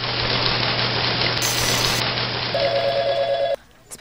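A steady hiss-like ambience with a low hum. Near the end a telephone rings with a steady tone for about a second, then everything cuts off suddenly as the call is answered.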